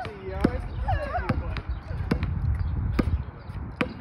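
A basketball being dribbled on a hard outdoor court, bouncing about every half second.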